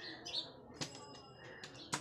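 An aluminium forearm crutch being handled and set against a wall, with two sharp knocks, one just under a second in and one near the end, and faint bird chirps in the background.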